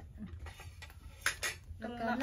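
A few light clinks of cutlery and dishes at a table, with two sharper clicks close together a little past the middle.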